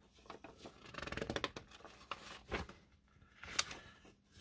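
Pages of an old 1959 magazine being turned by hand: faint dry paper rustling with quick crinkles, and one sharper paper click near the end.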